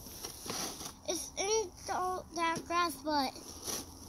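A young child's voice making a run of about six short, high-pitched syllables without clear words, starting about a second in.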